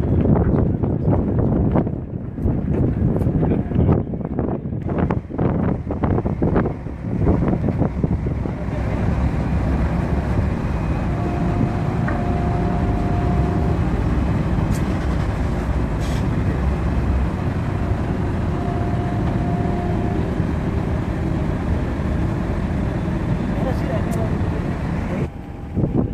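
Steady low rumble of a car ferry's engines as it comes alongside the dock, with gusts of wind buffeting the microphone through the first several seconds. Two faint held tones sound, a few seconds apart, about halfway through.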